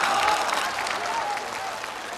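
Studio audience applause, dying down steadily.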